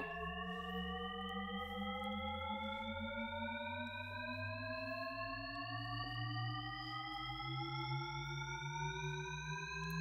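Shepard tone: several pure tones an octave apart glide slowly and steadily upward together, the highest fading out as a new low one fades in, so the pitch seems to rise forever without reaching the top. This is an auditory illusion.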